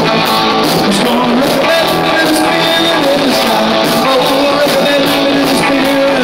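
A rock band playing live, loud and steady: distorted electric guitars and drums, with a man singing lead.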